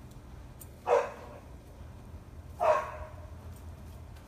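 A dog barks twice: one short bark about a second in and another just before the three-second mark.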